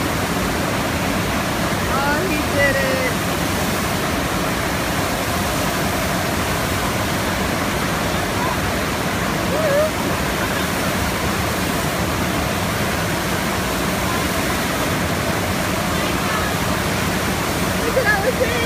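Steady rush of water streaming over the ride surface of an indoor standing-wave surf simulator.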